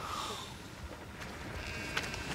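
Faint bleating of distant sheep over a quiet outdoor background.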